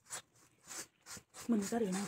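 Cloth pad wiped across the inside of a metal wok in short strokes, a few brief scrapes spaced about half a second apart. A voice comes in near the end.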